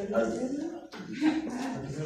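Indistinct speech: people talking quietly, with a short break about a second in.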